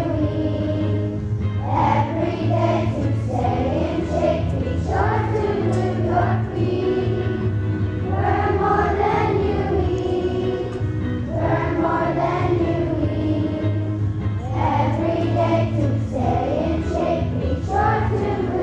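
A choir of elementary-school children singing a song in phrases a few seconds long, over steady instrumental accompaniment.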